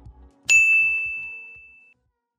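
A single bright, high chime struck about half a second in, ringing and fading away over about a second and a half: an end-card logo sting following the last notes of background music.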